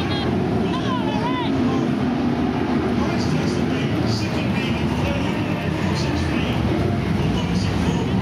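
A pack of BriSCA F1 stock cars racing, their V8 engines running at full power in a loud, steady din.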